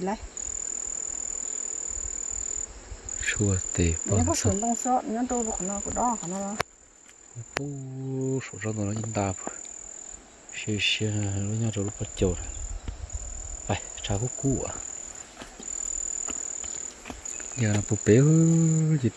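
A steady, high-pitched insect trill that repeats in stretches of one to two seconds with short breaks, under a woman's voice talking at intervals.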